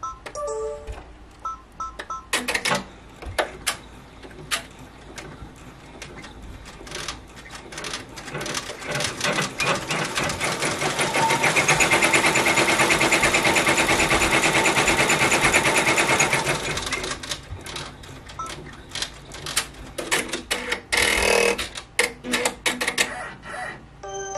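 Multi-needle embroidery machine stitching chenille yarn: a rapid run of needle strokes that speeds up, runs fast and steady for several seconds, then slows to separate clicks.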